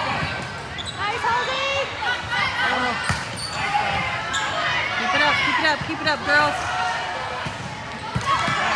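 Volleyball rally on a wooden gym floor: sneakers squeaking in short chirps as players shift, a few sharp hits of the ball, and voices of players and spectators calling out in a large echoing hall.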